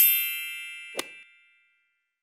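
Logo sting sound effect: a bright chime with a high shimmer that rings out and fades over about a second and a half, with a short sharp click about a second in.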